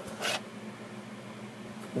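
Quiet room tone with a faint steady low hum, and one brief hiss about a quarter second in.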